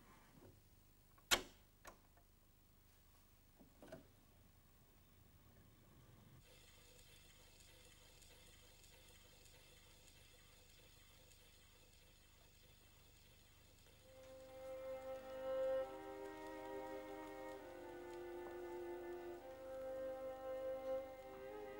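Gramophone being set to play: a few sharp clicks as it is handled, then faint record surface hiss from about six seconds in, and bowed-string music begins about fourteen seconds in, held notes rising in level.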